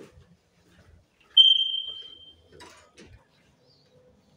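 A single high-pitched ding that starts sharply and fades out over about a second, followed by a brief rustle and a click.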